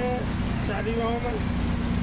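Steady low rumble of a rickshaw in motion through city traffic, heard from on board, with a man's voice briefly over it.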